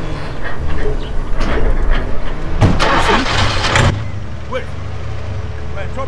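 Audi 80 sedan's engine running, with a loud surge of engine noise lasting about a second near the middle, then settling to a steady idle.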